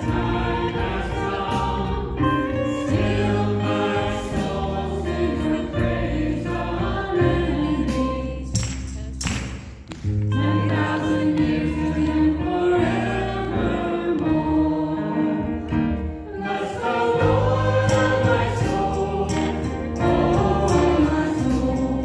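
Live worship band playing a slow praise song: voices singing over strummed acoustic guitar and keyboard, with a short break in the music about nine seconds in.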